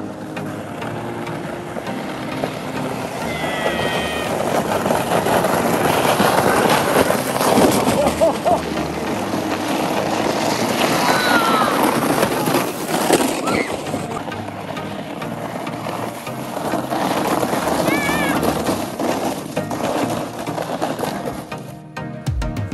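Plastic sleds scraping and hissing down a packed-snow street, with children's shouts rising over the rush a few times. Background music runs underneath.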